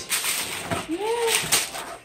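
Wrapping paper and tissue paper rustling and crackling as gifts are pulled from their boxes, with a short spoken 'yeah' in the middle.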